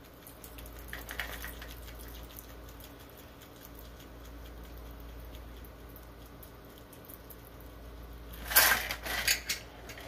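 A cocktail being poured from a metal shaker over ice into a glass, heard as a faint steady trickle. Near the end there is a louder clatter of the metal shaker and its ice as it is lifted away and set down.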